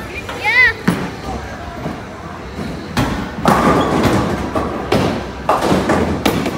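Bowling alley noise: a sharp thud about three seconds in, then a rumbling stretch of a ball rolling down the lane, with clattering knocks of pins near the end.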